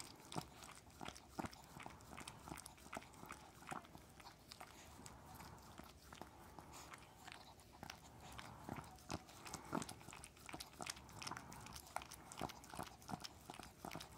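Small white dog licking a person's nose and lips up close: a steady run of short, irregular tongue smacks and clicks, several a second.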